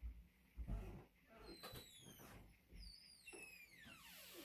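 Near silence, with two faint low thumps in the first second and a few faint high chirps falling in pitch later on.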